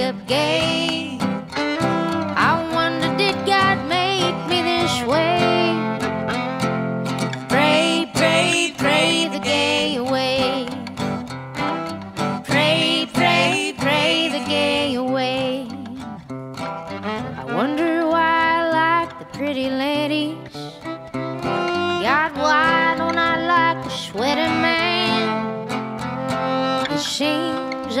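Fiddle playing an old-time country melody with sliding notes over a steadily strummed acoustic guitar, the instrumental introduction of a song.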